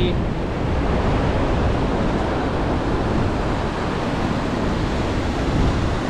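Ocean surf breaking and washing up a sandy beach, a steady rushing noise, with wind rumbling on the microphone.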